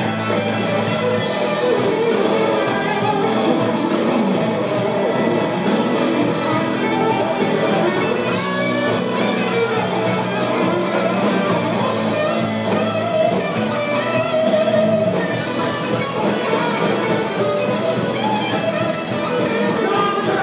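Live electric blues band playing an instrumental passage of a blues in E: electric guitars over bass and drums, with steady cymbal strokes.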